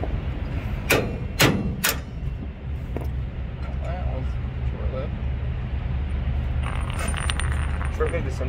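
Three sharp metal strikes about half a second apart, a hammer driving a punch held in locking pliers against a trailer axle's spindle nut to break the seized nut free so a failed wheel bearing can come out. A cluster of light metallic clicks follows near the end, over a steady low rumble.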